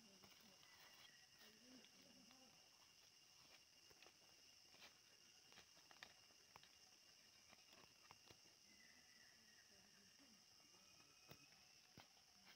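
Near silence: faint forest ambience with a steady high-pitched insect drone, scattered faint clicks and a few faint distant voices.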